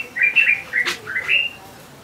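A bird chirping: a quick run of short, high, rising chirps through the first second and a half, then it falls quiet.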